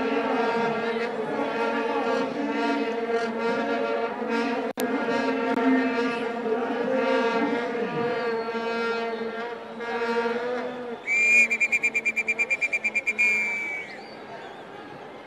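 A men's group singing a traditional Swazi song in unison and harmony, holding long notes over a steady low drone. Near the end a shrill, high trill pulses about nine times a second for about two seconds and then the singing stops.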